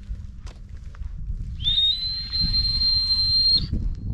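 A person whistling one loud, high note: it slides up briefly at the start, then holds steady for about two seconds, from about a second and a half in. A low rumble runs underneath.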